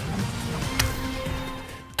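Television station ident bumper music, with a sharp accent hit under a second in, fading out near the end.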